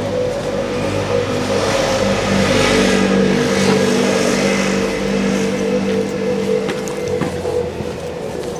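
A motor vehicle's engine running close by, a steady hum with a few held tones, growing louder in the middle and easing off again.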